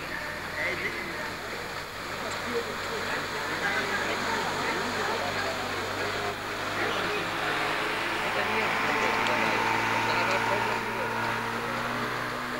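Indistinct voices of people talking in the background over steady outdoor noise, with a low steady hum throughout.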